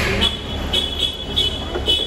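Repeated high electronic beeping, about five short beeps in two seconds, over the low rumble of a car park with vehicles idling.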